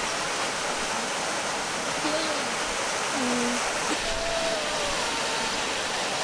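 A border collie whining softly in several short whimpers, some falling in pitch and some held level, over the steady rush of a mountain stream. The whines are a plea to be let into the water.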